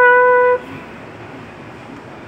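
Trumpet holding one long steady note that ends about half a second in, followed by a pause with only low background noise.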